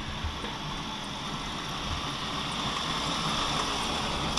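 A Jeep TJ driving toward the microphone along a dirt track, its engine and tyres on loose sand and gravel growing slowly louder as it approaches.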